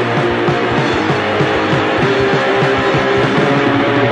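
Punk band playing an instrumental passage with no vocals: electric guitar chords over a fast, steady drum beat, heard through a live soundboard recording.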